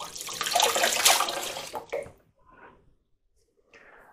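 Water running from a tap as hands are washed under it. It runs for about two seconds and then stops, leaving a few faint small sounds.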